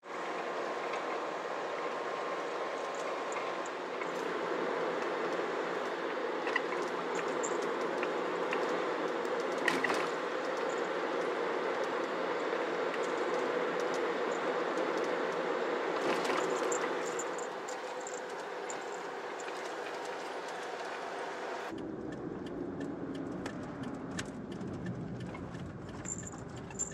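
Steady road and running noise of a moving kei van. About three-quarters of the way through it changes abruptly to a deeper-sounding run of the same kind.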